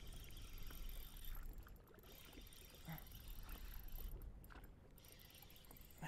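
Faint low wind rumble and water lapping at a boat hull, with a few faint clicks from a spinning reel being wound in against a hooked fish.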